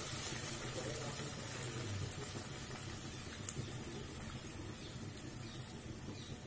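Faint sizzling and bubbling as tamarind water poured into a hot kadhai meets boiled elephant foot yam pieces, slowly dying down, with a couple of light ticks.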